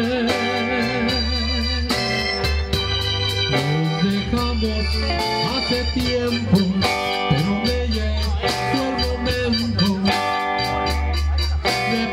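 Live band playing an instrumental passage: electric guitar and an organ sound from a Yamaha MO6 keyboard over bass and a drum kit keeping a steady beat.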